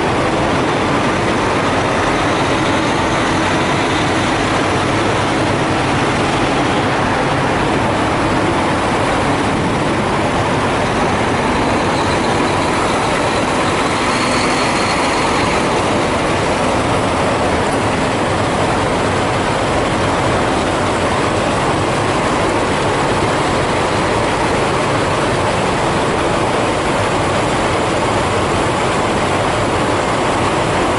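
Diesel semi trucks running steadily at low speed, one tractor-trailer backing slowly past at close range, with a constant engine and mechanical noise that does not let up.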